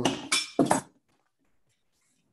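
Kitchen utensils clinking against a wooden cutting board, a knife put down and a vegetable peeler picked up, in a few short sharp sounds within the first second. Then the sound cuts out to silence.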